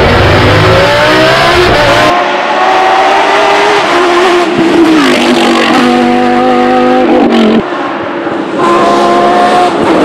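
Lamborghini Huracán Super Trofeo Evo's naturally aspirated V10 racing engine revving hard under acceleration. Its pitch climbs and drops back several times with gear changes and lifts. It is heard first from inside the cabin, then from the roadside after about two seconds.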